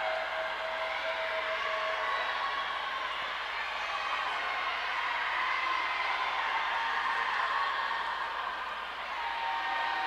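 Crowd at an indoor swimming pool cheering and shouting: a steady din of many voices with some held yells rising out of it.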